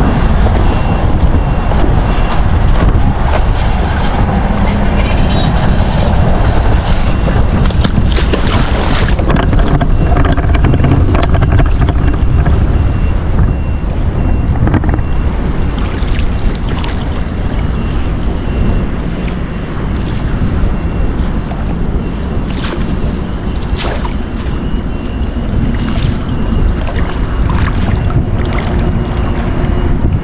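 Wind buffeting the microphone throughout, a loud steady rumble, with scattered short knocks and rustles as a nylon cast net is handled and gathered at the water's edge.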